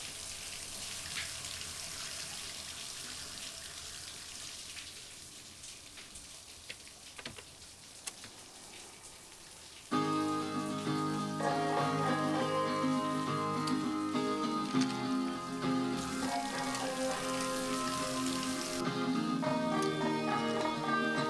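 A shower spraying water in a steady hiss, with a few light knocks, for about ten seconds; then music starts abruptly from a compact stereo, a song with guitar.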